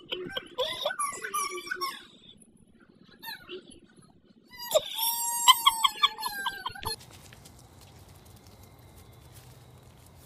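A toddler squealing and laughing in two spells, the second a fast run of high-pitched laughs about five seconds in. After about seven seconds there is only faint steady background noise.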